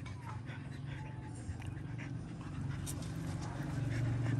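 Dogs panting close by, a quick steady breathing rhythm, with a few small clicks and squeaks from their mouths.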